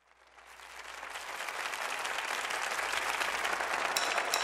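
Congregation applauding, fading up from silence about half a second in and growing steadily louder.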